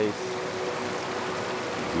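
Steady rush of creek water pouring over a concrete low-water slab bridge, with a faint steady tone underneath.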